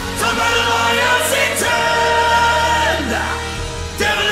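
Orchestral arrangement of a symphonic metal song, with choir-like voices holding long notes that slide from pitch to pitch over a steady low bass note. No lyrics are heard.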